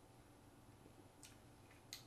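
Near silence: room tone, with a couple of faint short clicks, the clearest just before the end.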